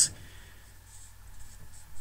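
A pause in a man's speech: faint room noise with a light scratchy hiss until he starts talking again just after the end.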